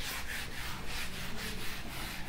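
Cloth duster rubbing across a whiteboard in quick, repeated back-and-forth strokes, erasing the writing.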